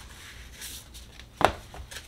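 An oracle card laid down on a wooden tabletop: a faint rustle of card handling, then a single sharp tap about one and a half seconds in as it is set down.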